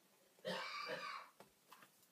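A woman's brief wordless vocal sound, a single voiced murmur lasting under a second that starts about half a second in, followed by a few faint ticks.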